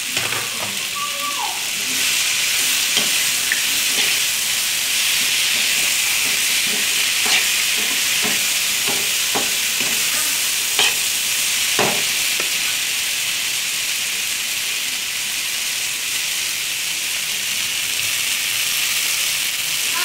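Dried meat (sukuti) with onion, green chillies and spring onion sizzling in a hot non-stick frying pan, in a steady high hiss. A metal spoon stirring the pan adds scattered clicks and scrapes against the pan through the middle of the stretch.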